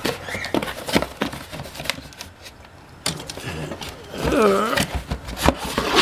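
Cardboard box being opened and handled by hand: flaps pulled back and the box shifted, with scattered knocks, taps and scrapes of cardboard, as a metal fire extinguisher is slid out near the end.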